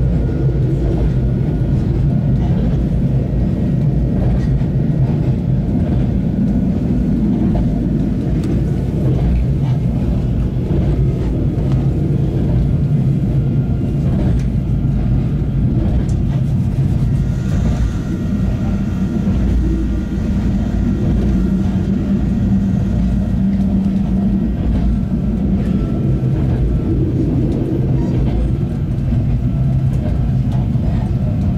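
Interior running noise of a narrow-gauge electric railcar in motion: a steady rumble of wheels on the track, with a faint high whine that grows plainer past the middle.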